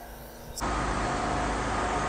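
Steady background noise that sets in abruptly about half a second in, after a quieter start, with a faint held hum in it.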